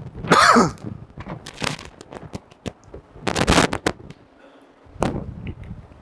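A person coughing and clearing the throat, loudest just after the start and again about three seconds in, with small clicks and knocks in between.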